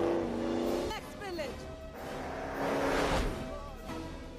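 A car driving up and passing close by, its sound swelling to a peak about three seconds in and falling away, mixed with film score music.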